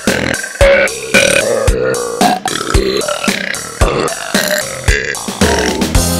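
Girls' burps sampled and cut together in rhythm over an electronic dance beat, with a kick drum about once a second.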